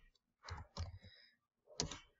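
Computer keyboard keys clicking, a handful of separate keystrokes with the loudest near the end, as a short comment is typed and sent.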